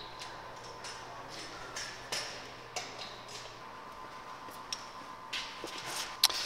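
A few faint, scattered metal clicks and taps as an Allen key and the static balancer's axle cones are handled, over a steady low hum.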